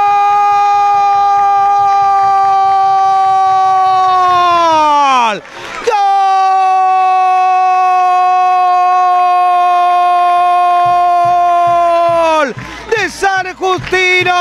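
A football commentator's long drawn-out goal cry, 'Gooool', held on one high note for about five seconds and sliding down at the end. After a quick breath he holds it again for about six seconds more, then breaks into fast talk near the end.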